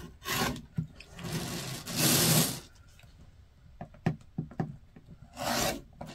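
Rotary cutter blade rolling through cotton fabric along the edge of an acrylic ruler onto a cutting mat: a few scraping strokes, the loudest about two seconds in and a shorter one near the end, with small clicks between as the ruler and mat are shifted.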